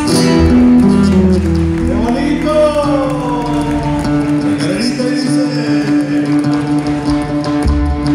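Live folk band playing: strummed acoustic guitars over an electric bass, with one long held note through the second half.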